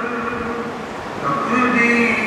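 A man's voice chanting melodically in long, drawn-out held notes. A faint held note in the first half gives way to a new, louder phrase about midway through.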